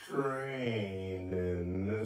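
A man's voice drawn out into one long, low syllable like a chant, its pitch dipping slightly at the start and then held steady.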